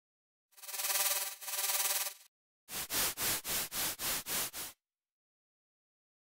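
Audjoo Helix software synthesizer presets being auditioned. A bright, buzzy pitched synth sound plays in two swells, then a run of about eight short noise pulses at roughly four a second, after which it cuts to silence.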